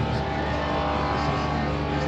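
A car engine idling steadily.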